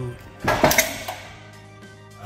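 A loud clattering knock about half a second in, a few sharp hits close together, as a heavy timber beam being levered over with a ratchet strap shifts and bumps on its sawhorses. Background music plays under it.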